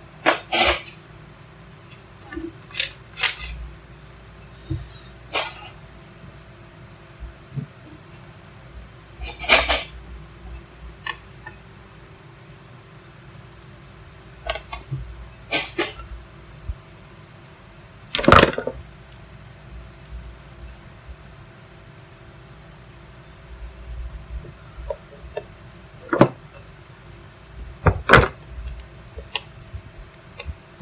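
Scattered knocks and clatters of tools and objects being picked up and set down on a wooden workbench, about nine separate hits a few seconds apart. A faint steady hum runs underneath.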